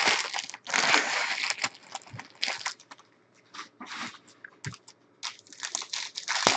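Foil wrapper of a Panini Prizm football card pack crinkling and tearing as it is handled and opened by hand: two dense bursts in the first second and a half, then scattered crackles, growing louder again near the end.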